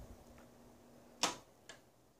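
A sharp click about a second and a quarter in as the Harbor Breeze ceiling fan's light is switched off, with a faint steady hum stopping at the same moment; a smaller click follows shortly after.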